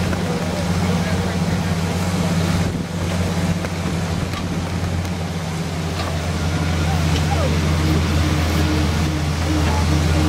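Engine of the vehicle pulling a hayride wagon, running steadily at low revs with a low, even drone.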